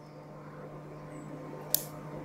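Quiet steady low hum with one short, sharp click about three-quarters of the way through.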